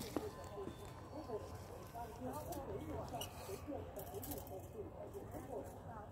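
Faint, indistinct voices chattering in the background, with no clear words.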